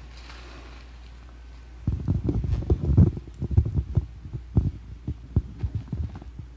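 Microphone handling noise: a dense run of irregular low thumps and bumps starting about two seconds in, then scattered single thumps.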